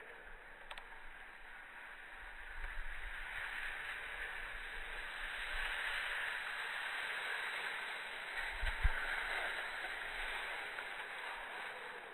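Skis hissing and scraping over packed snow, building to a louder scrape in the middle as a skier turns close by, then easing off as the skiers come to a stop. A single short low bump comes about three-quarters of the way through.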